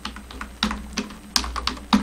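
Typing on a computer keyboard: a quick, irregular run of about a dozen keystrokes as a word is typed.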